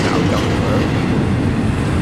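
Double-stack intermodal container freight train rolling by: a steady, loud noise of its cars' wheels running on the rails.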